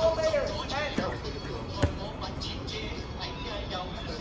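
Players shouting during a dodgeball game, with two sharp thuds of a thrown rubber dodgeball striking: one about a second in and a louder one just before the two-second mark.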